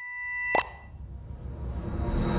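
Animated-logo sound effects: a ringing chime fading, a sharp plop with a short ring about half a second in, then a whoosh with a low rumble swelling through the rest.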